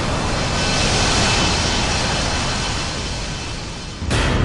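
Business jet in flight: a steady rush of jet engine and wind noise that fades down toward the end.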